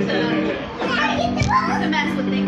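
Indistinct voices in a room, then a karaoke backing track's introduction begins about a second in with held musical notes.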